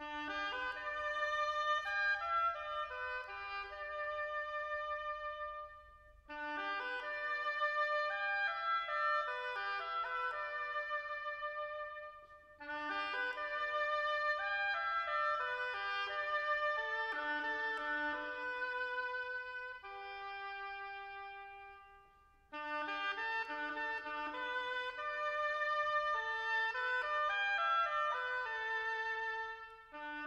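Instrumental orchestral passage from an opera with no singing: sustained chords and melodic lines in four phrases, each broken off by a short pause.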